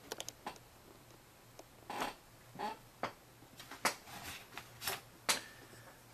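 Folding knives being handled and set down on a cloth-covered table: scattered light clicks and clinks of metal, several close together at the start and a few more spread through the rest.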